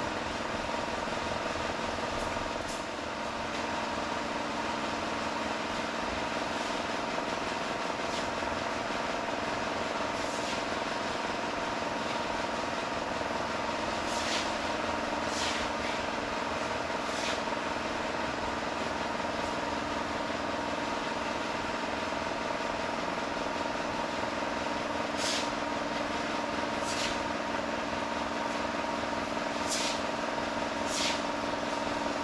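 A machine runs with a steady hum made of several held tones. Short, high bursts of hiss cut in a few times in the second half.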